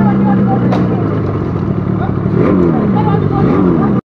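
Yamaha RD350's two-stroke twin engine running in slow traffic, with a steady note at first and then the revs falling and rising in pitch over the last second and a half. There is a sharp click about three-quarters of a second in.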